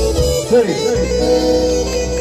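Live folk dance music for a kolo: a short sliding note, then about a second in the beat stops and the band holds a sustained closing chord.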